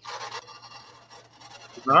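Rubbing, rustling noise on a microphone that starts suddenly, loudest for the first half second, then settles to a lower hiss; a man starts speaking near the end.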